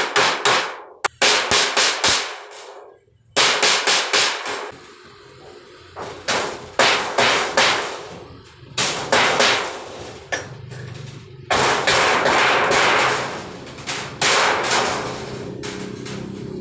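Hammer beating the edge of a galvanized iron sheet to fold it, in quick bursts of sharp metallic blows with short pauses between them. The blows stop near the end.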